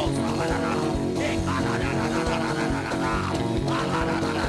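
Live church band music with bass and guitar over a steady beat, with voices faintly over it.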